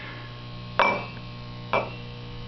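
Steady electrical hum from a running radio generator, with two sharp knocks about a second apart, each ringing briefly like glass or metal struck.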